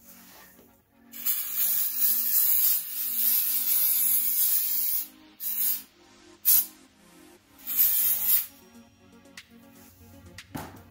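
Aerosol cleaner sprayed onto a steel flywheel face to strip grease: one long hissing spray of about four seconds, then three short bursts.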